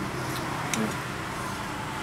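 Steady low background hum, like room or street ambience, with a couple of faint light clicks about half a second in.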